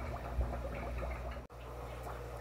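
Aquarium aeration bubbling: a patter of small irregular pops over a low steady hum, broken off briefly about one and a half seconds in.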